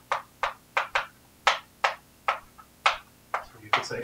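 Chalk writing on a blackboard: a run of short, sharp taps and scratches as letters are stroked out, about three a second and irregularly spaced.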